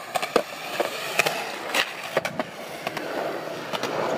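Skateboard wheels rolling over concrete, with a string of sharp clacks and knocks scattered through; the rolling grows louder near the end.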